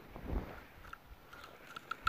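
Faint handling noises from gloved hands working on a shotgun held upright: a soft low bump about a third of a second in, then a few light clicks.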